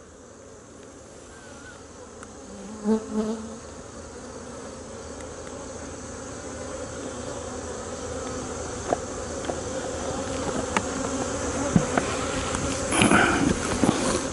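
Honeybees buzzing around an open hive, the buzz swelling steadily louder as more of the disturbed colony takes to the air; the bees are a little testy.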